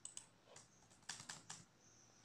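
A few faint keystrokes on a keyboard: a couple of clicks right at the start, then a quick run of four or five about a second in.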